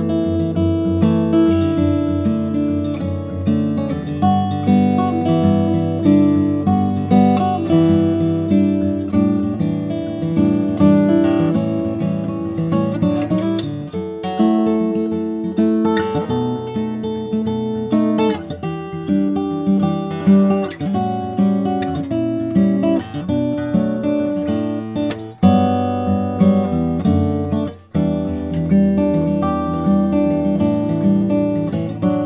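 Taylor AD27 mahogany-top acoustic guitar played fingerstyle: a melody over bass notes. The playing breaks off briefly twice near the end before resuming.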